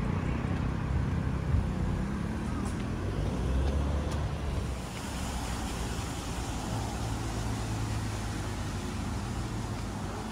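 Road traffic: cars passing with a low rumble, loudest in the first five seconds. About five seconds in it drops to a quieter, steadier distant traffic hum.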